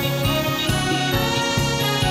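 A live band playing an instrumental passage of a trot song, with a trombone section among the brass, over a steady drum beat.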